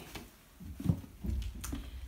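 Low rumble of a handheld phone being moved, with a few soft knocks, the clearest about a second in.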